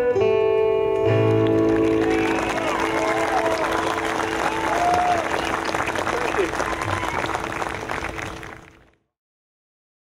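Acoustic guitars ringing out on a final chord, then audience applause with whoops and cheers, fading to silence near the end.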